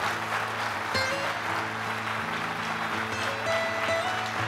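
Audience applauding, a dense steady clatter of clapping, over instrumental music with long held low notes.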